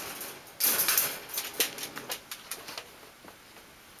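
A Giant Schnauzer stepping into a wire crate and settling onto its cushion: rustling of the bedding and the dog's coat, with a few light clicks and knocks against the crate. It quietens toward the end as the dog lies still.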